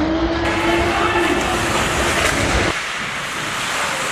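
Slowed-down ice-rink sound from a slow-motion replay: a deep rumbling wash with one drawn-out low tone that rises slightly and then falls. Both cut off abruptly less than three seconds in, and a quieter, hissier rink sound follows.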